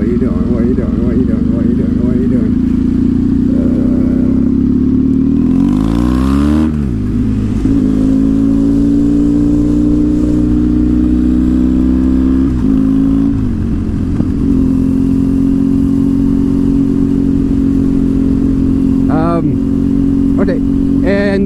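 Triumph Thruxton's parallel-twin engine under way, heard from the rider's seat. Its pitch falls sharply about six seconds in and dips again around thirteen seconds, as at gear changes; in between it rises slowly, and afterwards it holds steady.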